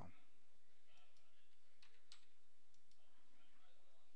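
A handful of faint, scattered clicks over a steady low hiss, from the device used to handwrite numbers on the screen.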